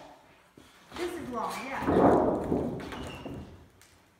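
A large thin aluminum sheet flexes and wobbles with a warbling, rattling rumble as it is lifted and stood on edge. The sound starts about a second in, swells loudest around two seconds in, then dies away.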